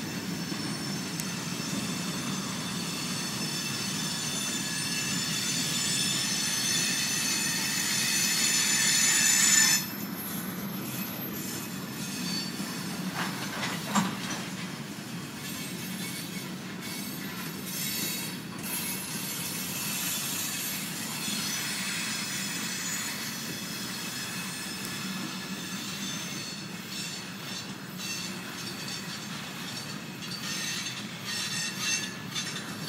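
Freight cars rolling past on the rails, wheels squealing in several high steady tones that grow louder for about ten seconds and then cut off suddenly. A single sharp knock follows a few seconds later, then a steady rolling rumble with fainter squeals coming and going.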